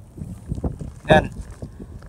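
Uneven low rumble of wind buffeting the microphone, with faint stirring of shallow seawater as a hand grabs a small crab from the sand bottom.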